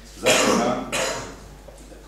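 A person coughing twice: a longer, loud cough followed by a shorter one.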